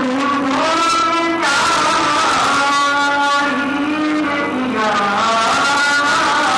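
A man's voice singing devotional verse into a microphone over a loudspeaker system, loud, in long held notes that glide and waver in pitch.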